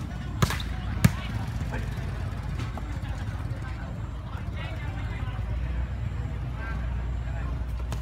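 A volleyball struck hard twice, about half a second apart, in the first second: a spike at the net and the next hit on the ball. Faint shouts from players and onlookers follow over a steady low rumble.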